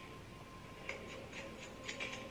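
Faint, evenly spaced ticks, about four a second, starting about a second in, over a faint steady hum from the film's soundtrack.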